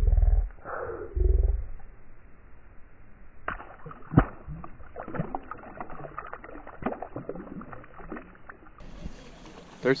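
Water splashing and small knocks beside a kayak as a small bass thrashes at the surface, with scattered sharp knocks, the sharpest about four seconds in. Two deep low rumbles of wind or handling on the microphone come in the first second and a half.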